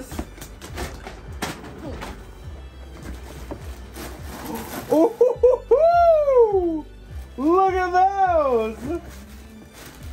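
Tissue paper crinkling and rustling as it is pulled out of a cardboard shoebox, followed about halfway through by two long, drawn-out 'ooh' exclamations from a man, each rising and falling in pitch.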